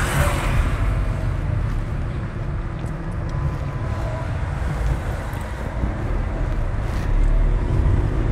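A car driving slowly in town traffic: a steady low rumble of engine and tyre noise, with a brief hiss right at the start.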